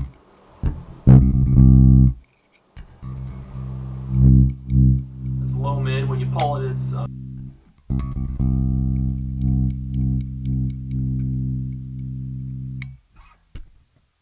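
Zon VB4 headless electric bass played through its onboard preamp while the mid control is demonstrated. A few short plucked notes come first, then two long sustained notes: one from about three seconds in, the other from about eight seconds in, dying away shortly before the end.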